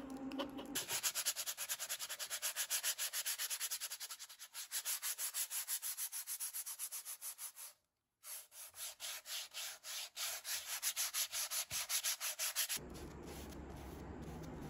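Fast, rhythmic back-and-forth rubbing strokes, several a second, of sandpaper being worked by hand over a primed stretched canvas. The strokes break off for a moment about eight seconds in, resume, and stop shortly before the end, leaving a low room hum.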